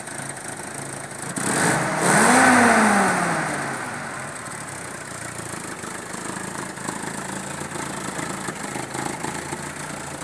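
Vintage jeep's engine running, revved once about two seconds in, its pitch rising and falling back. It then runs steadily as the jeep moves slowly off.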